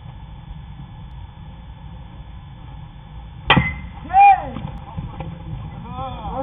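A baseball bat cracks against a pitched ball once, about three and a half seconds in, sending it on the ground. Half a second later a player gives one loud rising-and-falling shout, the loudest sound here.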